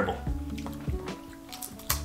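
Background music with steady tones, over wet mouth sounds of someone chewing crunchy fried rice-flour chips, with a few sharp crunches near the end.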